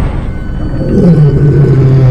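Dramatic film-trailer soundtrack: a low rumble, with a deep, loud tone that slides slowly downward starting about a second in.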